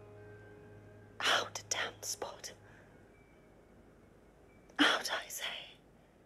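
A woman whispering "Out, damned spot!" in two short breathy bursts, the first about a second in and the second near the end. Faint held music tones fade out in the first second.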